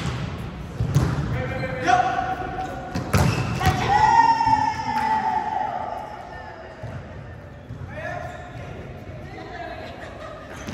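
Volleyball rally: sharp smacks of the ball being hit, about a second in and twice more around three to four seconds in, with players shouting calls. The sounds echo in a large gym hall.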